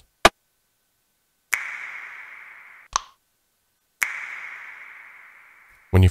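Percussion one-shot samples from a drum library previewed one at a time. A very short, sharp rim click comes just after the start. Then a wet finger-snap sample plays twice, about 1.5 s and 4 s in, each a sharp snap with a long reverb tail that dies away, with a short click-like hit between them. The gaps are dead silent.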